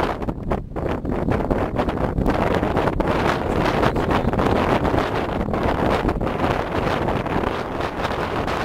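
Wind blowing across the microphone: a loud, steady rushing rumble that rises and falls in small gusts.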